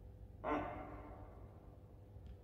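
A man's short, breathy sigh about half a second in, starting suddenly and tailing off over about a second, over a faint low room hum.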